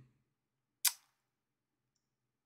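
Near silence, broken once by a single short, sharp click-like noise just under a second in.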